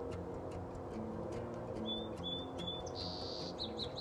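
A small bird calling over soft background music: three short chirps about two seconds in, then a brief held note and a quick run of chirps near the end.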